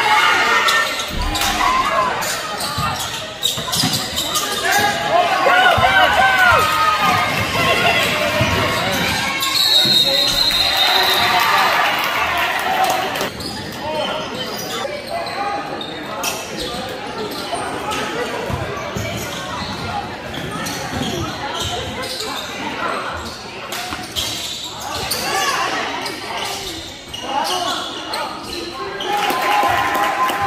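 A basketball being dribbled and bounced on a hardwood gym floor during play, with voices shouting and calling. The sound echoes in a large gym hall.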